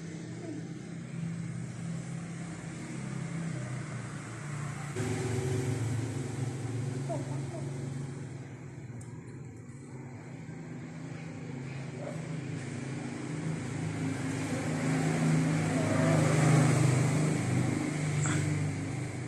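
Low hum of a motor vehicle engine passing, swelling twice and loudest near the end before easing.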